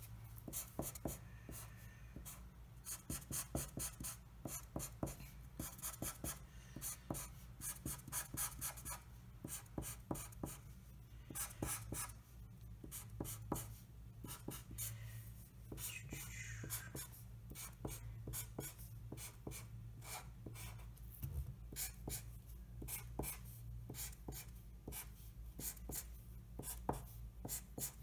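Black Sharpie permanent marker drawn across paper in quick, repeated short strokes, its felt tip scratching as a zigzag spike border is inked.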